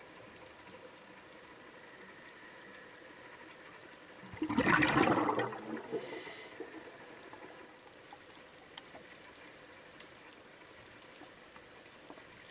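Underwater recording of a scuba diver's breathing: a loud gurgling rush of exhaled bubbles about four seconds in, lasting about a second, then a short hiss from the regulator on the next breath. Between breaths there is only a faint steady hum.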